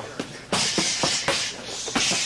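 Strikes from a clinch drill on focus mitts: knee and uppercut blows landing as a rapid series of sharp slaps, with shuffling and hissing breath between them.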